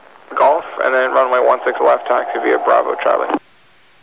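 Air traffic control radio talk: a voice over a narrow-band aviation VHF radio channel, which cuts off abruptly about three and a half seconds in, leaving a faint steady hiss.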